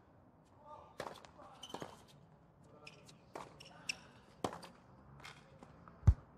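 Tennis rally on a hard court: a serve and then about half a dozen sharp racket-on-ball hits and ball bounces, spaced roughly half a second to a second apart, with faint short sounds from the players between the hits.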